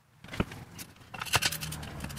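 Hands handling a metal test rig: a single knock, then a few quick metallic clinks and rattles from the locking pliers and the steel gear weight hung on bungee cords.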